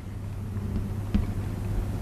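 Chalk writing on a chalkboard, with a couple of light taps about a second in, over a low steady rumble.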